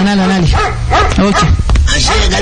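Several people calling out and chanting in loud, overlapping voices.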